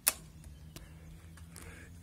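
A sharp click from the handlebar remote lever that locks the RockShox suspension fork, followed by a few faint ticks.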